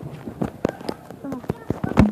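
A quick, irregular series of knocks and taps as a handheld phone is carried and handled on the move, with brief snatches of a voice.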